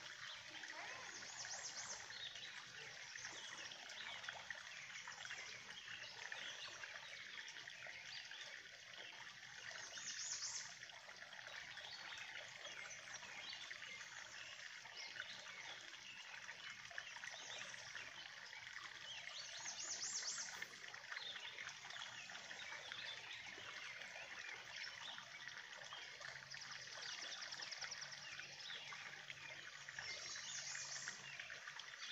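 A faint, steady trickle of spilling water. A high bird trill repeats about every ten seconds.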